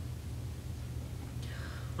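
A pause between spoken phrases over a steady low hum, with a faint breath drawn in near the end just before the reading resumes.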